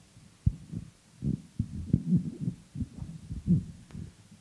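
Handling noise from a handheld microphone being picked up off a table: an irregular string of dull low thumps and rumbles.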